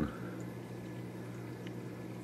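Hang-on-back aquarium filter running: a steady trickle of water from its outflow, with a low hum.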